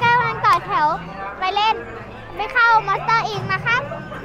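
A young boy's high-pitched voice in short, sing-song bursts with strongly wavering pitch, over faint background music.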